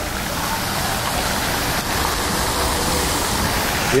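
Outdoor fountain running: a tall central jet and a ring of arcing jets splashing steadily into the basin.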